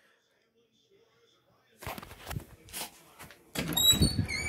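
Silence for about two seconds, then scattered faint knocks and rustles like a phone being handled and moved. A louder stretch with a couple of short whistle-like tones comes in near the end.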